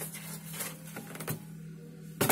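Faint knocks of an egg carton being handled against a fridge's plastic and glass shelves, over a steady low hum.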